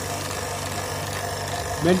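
Electric vacuum pump running with a steady hum as it draws down the pressure in a vacuum desiccator.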